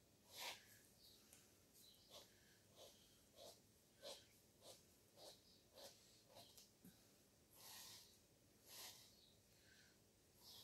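Faint, short swipes of an ink-dauber bottle drawn across a paper journal page, one every half second to second as the lines are ruled.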